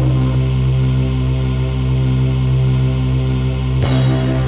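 Dark ambient synthesizer music: a low keyboard chord held steady as a drone, with a short hissing swell just before the end.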